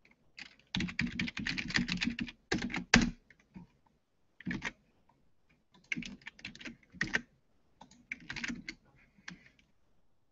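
Computer keyboard being typed on: a long run of rapid keystrokes, then several shorter bursts.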